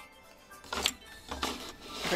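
Plastic toy play-set pieces handled on a tabletop: a handful of short clacks and rustles.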